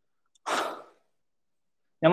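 A man sighs once, a short breathy exhale about half a second in that fades out within half a second.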